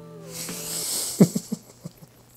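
A man's stifled laugh: a long breathy hiss of air, then a few short chuckles about a second in, over faint background music.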